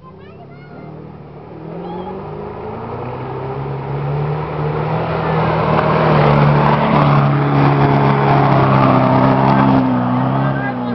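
Off-road 4x4's engine running hard as it drives through deep mud. It grows steadily louder as it approaches, loudest in the second half.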